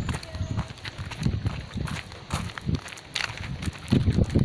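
Irregular soft thumps and rubbing noise from a handheld phone being jostled while walking, with faint voices in the background.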